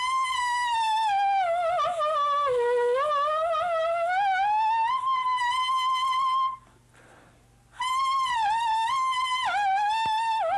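Saxophone mouthpiece played on its own, without the horn: a single high, reedy tone slides slowly down nearly an octave and back up again, wavering a little as it goes, then holds. After a break of about a second a second tone starts and drops in small steps near the end. This is a brass-style flexibility exercise, the pitch bent with the lips and by taking more or less mouthpiece.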